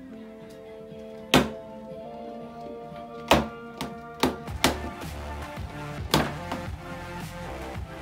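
A chocolate egg knocked against a wooden tabletop about six times at uneven intervals, sharp loud knocks as it is cracked open, over steady background music.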